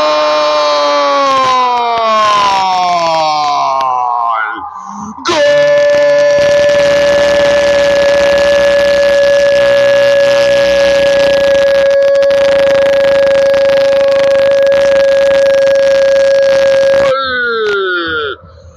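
Football commentator's drawn-out goal cry, a held "goooool" in two breaths: the first long note slides slowly downward, then after a brief pause a second note is held steady for about eleven seconds before dropping away.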